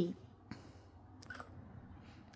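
Quiet room with one sharp click about half a second in and a few faint ticks a little later, just after a voiced phrase dies away.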